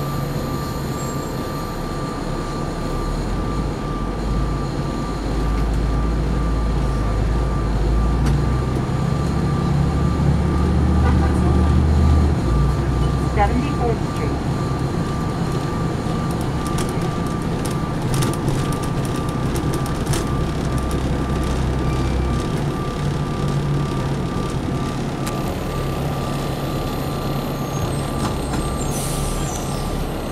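Articulated diesel transit bus (Neoplan AN459) heard from inside while under way. The engine drone grows louder and climbs in pitch from about five seconds in as the bus accelerates, then steps down in pitch about twelve seconds in and again about twenty-two seconds in, over steady road noise. A faint steady high tone runs throughout.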